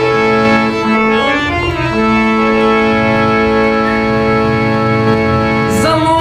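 Harmonium playing an instrumental interlude: a few quick changing notes, then a long held chord, with a tabla beat underneath. A male voice comes back in right at the end.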